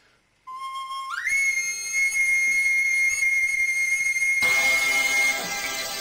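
A small recorder sounds a note that slides up about an octave a second in and is held high and steady for about three seconds. Near the end, accompanying band music comes in suddenly and the recorder line starts stepping down.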